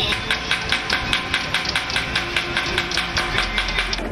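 Rapid, regular metallic banging, about five strikes a second, with a ringing tone beneath the strikes.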